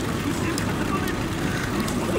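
Steady din of a pachinko parlour, a constant roar of machines and rattling steel balls, with a few faint clicks.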